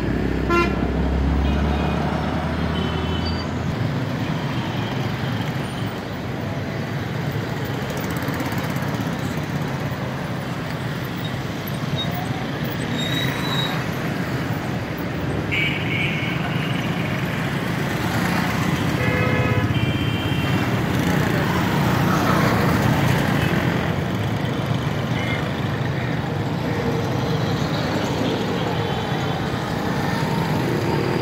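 Steady street traffic of motorcycles and auto-rickshaws passing on a busy roundabout, with several short horn toots.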